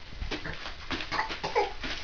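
Toddler making a few short, high, squeaky vocal sounds in the second half, over a run of light rapid ticks and taps.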